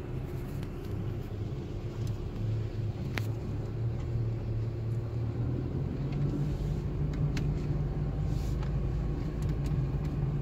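Car running along a dirt road, heard from inside the cabin: a steady low engine hum with tyre rumble. The engine note rises slightly about six seconds in, and there are a couple of short sharp clicks.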